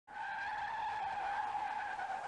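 A steady high-pitched squeal, one tone with a fainter higher tone above it, starting just after the beginning and holding level: an intro sound effect.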